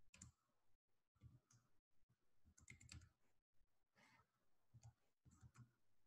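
Near silence with faint computer keyboard and mouse clicks in small scattered groups, about one group a second.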